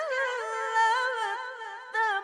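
A boy's high voice reciting the Quran in melodic, chanted style, holding one long ornamented note that wavers up and down in pitch. It dips briefly just before the end.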